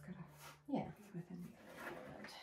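Quiet speech: a short murmured remark about a second in, over a low steady hum that cuts off just before it.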